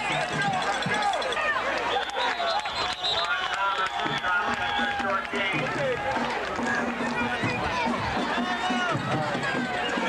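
Many people's voices shouting and talking over one another at once, a spectator crowd close to the microphone, with no single voice clear.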